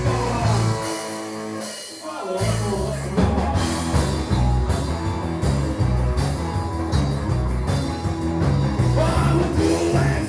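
Live rock band playing, with electric guitars, bass, drums and singing. About a second in, the bass and drums drop out briefly, and the full band comes back in about two and a half seconds in.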